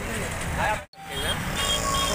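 Traffic noise of a congested road of engines idling and moving slowly, under a short spoken reply. The sound drops out suddenly and briefly just before a second in, then the traffic noise resumes.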